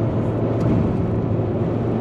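Steady drone of a car driving, heard from inside the cabin: engine and tyre noise with a low, even hum.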